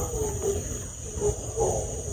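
An animal call, heard twice and sounding dog-like, over the steady chirring of crickets.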